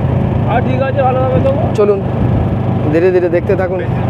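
Steady low engine and road drone from a moving vehicle, heard from inside it, with a person's voice talking over it about half a second in and again around three seconds.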